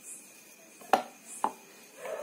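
Two short handling knocks about half a second apart, the first louder, from a spool of thread being picked up and handled with a small cloth-wrapped bead.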